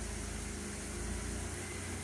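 Jeep Wrangler engine running steadily at low revs as the Jeep crawls its front tire up onto a rock ledge.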